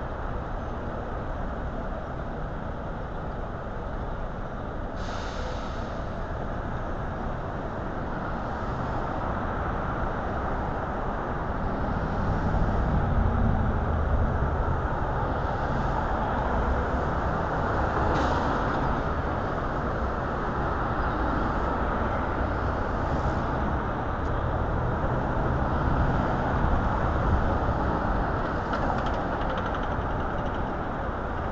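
City street traffic at an intersection: a steady hum of cars passing, growing louder in the middle stretch as vehicles go by, with a couple of brief hisses, one about five seconds in and one past the middle.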